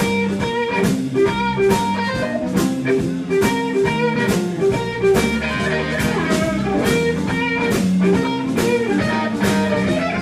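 Live soul-funk blues band playing an instrumental passage: electric guitar over bass and drum kit, with a steady beat.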